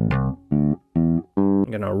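Electric bass guitar playing a repeated line of short, separated notes, about two a second.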